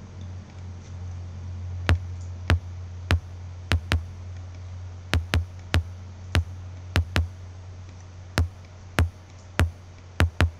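Electronic drum-machine loop playing back from a music production program: a steady low bass tone with sharp, clicky kick-drum hits in a syncopated rhythm starting about two seconds in, the kick being shaped with EQ.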